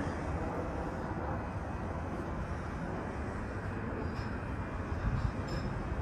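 Steady low outdoor background rumble with no clear source standing out, and a couple of faint taps in the second half.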